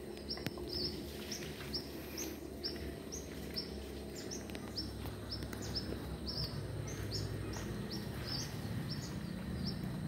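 A bird calling with a steady run of short, high chirps, about two or three a second, over a low outdoor background rumble.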